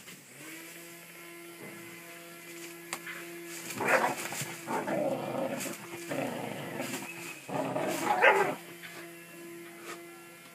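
Whippet barking and growling in play while shaking a soft toy, in rough bursts between about four and eight and a half seconds in, loudest near four and eight seconds. A steady low hum runs underneath.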